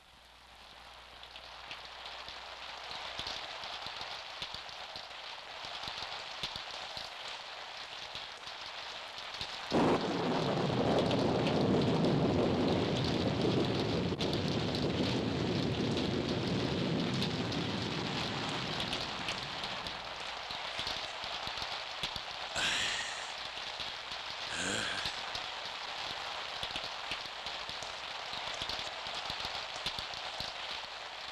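Steady rain on the film's soundtrack, with a long rumble of thunder that breaks in suddenly about ten seconds in and dies away slowly, and two brief sharper noises later on.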